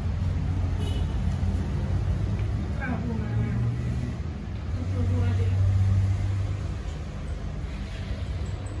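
A steady low rumble that swells louder twice, about three seconds in and again from about five to six and a half seconds, with faint voices talking over it.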